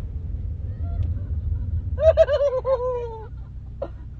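A girl's high-pitched laughing shriek about halfway through, a run of quick falling pulses lasting just over a second, over the low rumble of a car that fades after it.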